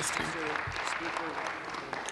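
A chamber of legislators applauding with steady clapping, faint voices underneath.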